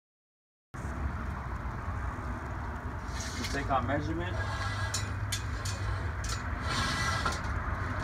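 Outdoor background with a steady low rumble starting suddenly less than a second in, a faint voice in the background, and several sharp clicks and taps as a tape measure is worked along a length of galvanized steel pipe.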